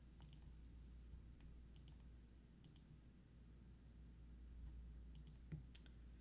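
Near silence: faint room tone with a low hum and a handful of faint, scattered clicks.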